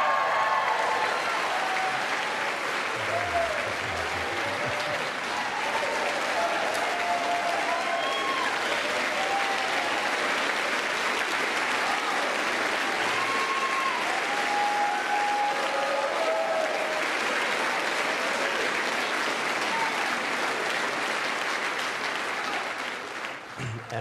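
A large congregation applauding steadily, with scattered voices calling out over the clapping. The applause dies down just before the end.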